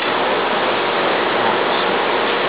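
Steady, even hiss of background noise with no distinct knocks or clicks.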